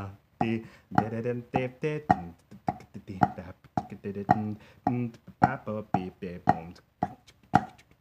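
Drumsticks striking a rubber practice pad in a steady run of flam taps, the grace notes falling just before the main strokes. The drummer vocalises the rhythm in short syllables, about two a second, in time with the strokes.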